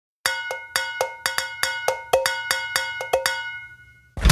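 Intro sound logo of quick ringing metallic, bell-like percussion strikes, about five a second, dying away near the end.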